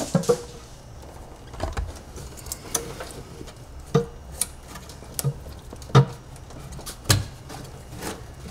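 Irregular clicks and light knocks of metal and rubber parts being handled as a throttle body is pushed into a charge-pipe coupler, over a low steady hum.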